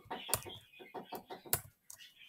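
Computer keyboard being typed on: a quick, uneven run of about a dozen keystrokes, two of them louder.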